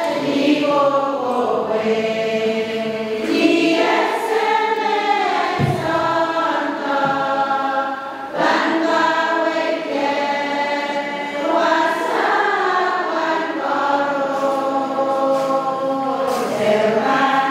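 Two women singing a hymn together from hymnbooks, their voices in harmony, in phrases with a short breath about halfway through.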